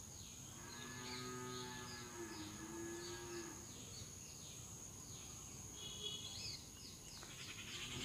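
A cow mooing faintly in one long call of about three seconds. Quick high chirps repeat throughout over a steady thin high whine.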